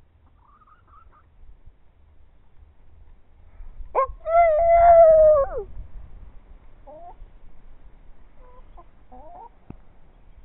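Chickens clucking softly here and there, with one loud, drawn-out call about four seconds in that holds for over a second and falls off at the end.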